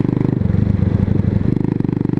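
A 125cc motorcycle engine running under way, a steady rapid pulse of firing strokes. Its note shifts slightly about half a second in and again about a second and a half in.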